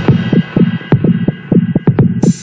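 Techno track in a breakdown with no kick drum: a fast, throbbing synth bassline pulsing about five times a second with sharp clicks, its top end filtered darker early on.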